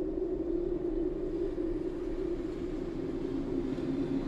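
A steady low rumble with a constant hum in it, faded in from silence: the distant background noise of a city.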